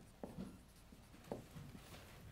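Marker pen writing on a whiteboard: a few faint, short scratchy strokes as a word is written and then underlined.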